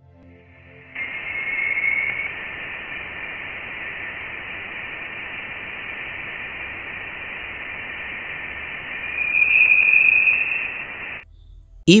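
Voyager 1 Plasma Wave Science recording of plasma oscillations in interstellar space, turned into audible sound. It is a steady hiss with a faint whistling tone about a second in, then a louder, higher tone near the end, and it cuts off suddenly. The higher tone marks denser plasma.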